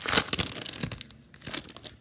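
Wrapper of a 2021 Bowman Draft trading card pack being torn open and crinkled by hand. The crackling is loudest in the first half second and thins to scattered crackles toward the end.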